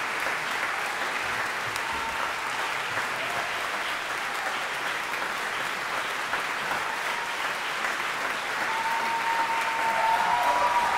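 Concert-hall audience applauding steadily, with a faint held tone, such as a whistle or a called-out voice, near the end.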